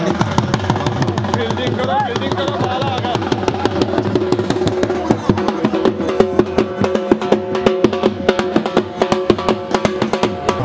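Dhol drums beaten in a fast, steady rhythm, the strokes growing louder about halfway through, with a held musical note and voices over them.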